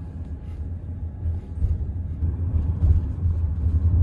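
Low, steady road rumble inside the cabin of a moving car.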